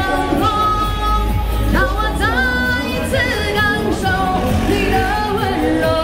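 A woman singing a Cantopop song into a handheld microphone, amplified over pop backing music.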